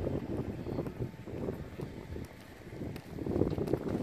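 Wind rumbling on the microphone, with soft, irregular thuds of bare feet running and bouncing on the inflated vinyl membrane of an air dome, growing louder in the last second.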